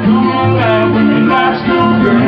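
Live music led by guitar, with notes held steadily throughout.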